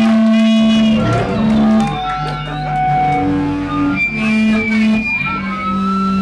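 A live rock band playing loudly: electric guitar holding long notes that step from pitch to pitch, over drums and cymbals.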